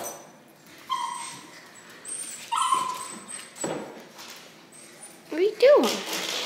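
A dog whining and crying: short high whimpers about a second in and again about two and a half seconds in, then a louder whine that rises and falls in pitch near the end.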